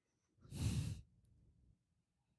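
A person sighing once: a short breathy exhale about half a second in, lasting about half a second.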